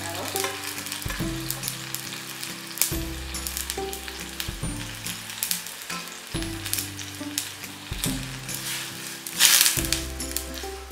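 Chopped onion and garlic sizzling and crackling in hot oil in a steel kadai as red masala powder is tipped in. Near the end a brief louder surge of sizzling comes as a steel ladle stirs the masala into the oil.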